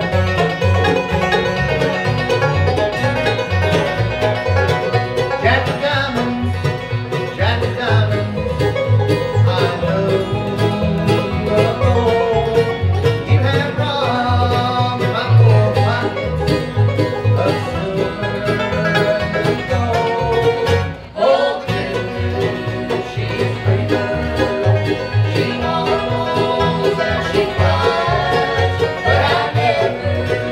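A live acoustic bluegrass band playing: five-string banjo, mandolin and acoustic guitars over a steady upright-bass pulse. The music dips briefly about two-thirds of the way through.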